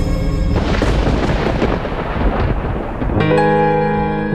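A dramatic background score. Half a second in, the music gives way to a loud rumbling crash like thunder, which dies away over about two and a half seconds. Sustained electric-piano chords come in shortly after three seconds.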